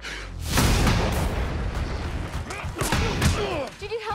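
Action-trailer sound mix: a loud boom about half a second in, followed by dense crashing, gunfire-like noise over music, with a shouted voice near the end.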